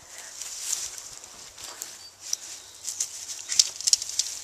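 Dry straw rustling and crackling in short, irregular bursts, growing denser and louder near the end, as a dog searches through straw bales for a hidden rat tube.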